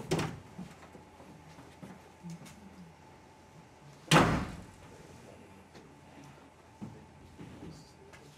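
Someone rummaging among shelves and boxes, with light knocks and shuffling and a single loud thump about four seconds in.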